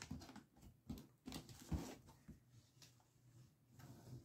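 Faint scattered taps and rubs of hands on a cardboard box as it is handled and turned over, the loudest about a second and a half in.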